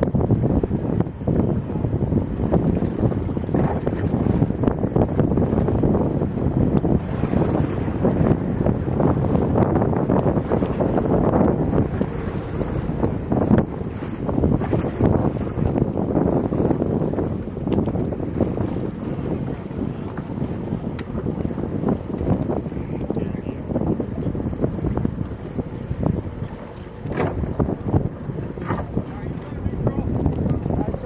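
Wind buffeting the microphone on open sea, with water washing and splashing around small boats.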